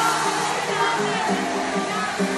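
Concert audience singing along together over amplified live music, a dense, steady wash of many voices and instruments.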